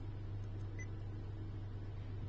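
Steady low hum with one short, faint beep from a Honda Gathers navigation unit's touchscreen a little under a second in, as a menu button is pressed.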